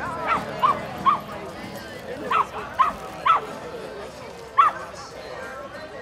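A dog barking: seven short, sharp barks in three groups, two near the start, three around the middle and one later, over the chatter of a crowd.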